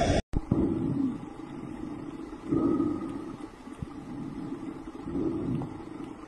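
Muffled underwater rumble picked up by a diver's camera, swelling twice as bursts of scuba exhaust bubbles rise. Just at the start, a louder rushing noise cuts off abruptly.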